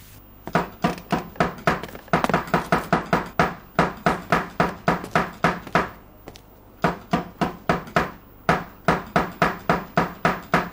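Someone knocking on a door over and over, about three to four knocks a second, in long runs with two short breaks.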